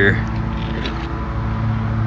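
A steady low mechanical hum, as of a motor running, holding level throughout, with a few faint clicks.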